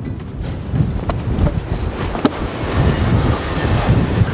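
Horse trotting over ground poles on a sand surface: a rhythmic low thudding and rumble of hoofbeats and movement. Two short, sharp clicks come about a second apart.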